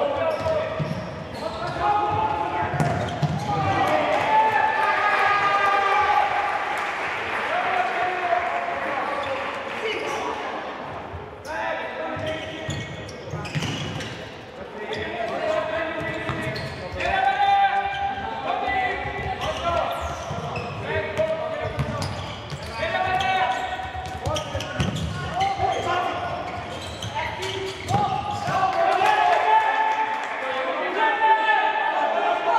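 Futsal ball being kicked and bouncing on the hall's wooden court in play, with voices calling out across the hall.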